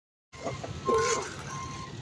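A truck's reversing alarm beeping, two steady high beeps about two thirds of a second apart, over a low engine rumble: a concrete mixer truck backing up.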